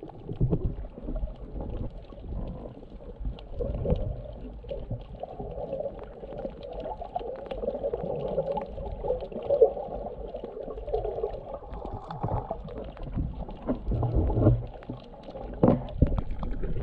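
Muffled underwater sound through a submerged camera's waterproof housing: water washing and rumbling as the snorkeler swims, with a few knocks, the loudest near the end.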